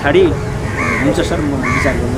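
A crow cawing twice, a little under a second apart, over a man's ongoing speech.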